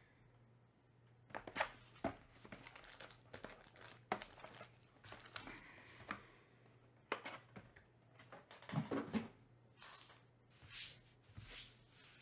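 A Topps Finest hobby box being torn open by hand: plastic wrap and cardboard tearing and crinkling, with sharp snaps and taps, then its foil card packs rustling as they are lifted out. Near the end come several short swishes.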